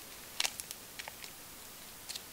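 Faint handling noise: a few light ticks and taps, clustered about half a second in and again around a second in, over quiet room tone.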